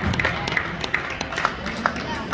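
Scattered clapping from a small crowd of spectators, irregular sharp claps a few times a second, with voices murmuring behind.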